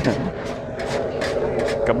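A steady machine hum, with a few faint clicks, under brief speech: a voice trails off at the start and a word is spoken near the end.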